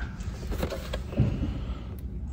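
A boxed action figure (cardboard and plastic blister packaging) being handled and turned over in the hand, with a few soft knocks and rustles over a steady low background hum.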